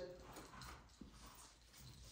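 Near silence: quiet room tone, with one faint click about halfway through.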